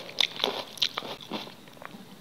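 Close-miked eating sounds: chewing, with a series of short sharp clicks as a metal fork works instant noodles against a ceramic bowl.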